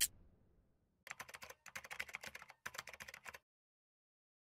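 Computer keyboard typing sound effect: three quick bursts of key clicks, the first about a second in and the last ending about three and a half seconds in.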